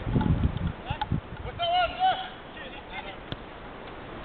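Players shouting across an outdoor football pitch: one drawn-out call about halfway through, with two sharp knocks of a ball being kicked and a low rumble at the start.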